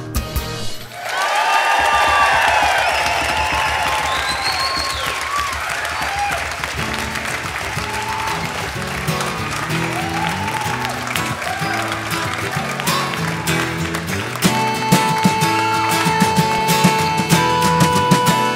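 Live audience applauding and cheering, with a few whoops, while a guitar plays quiet notes underneath. About fifteen seconds in the band starts the song: guitar with sustained notes and regular drum hits.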